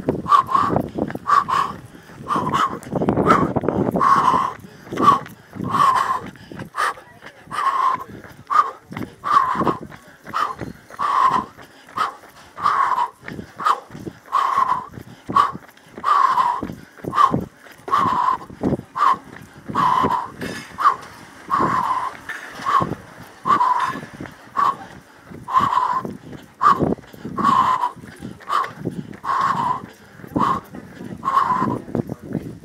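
A runner breathing hard in a steady rhythm, a forceful exhale a little over once a second, with the quicker thuds of running footsteps and phone handling.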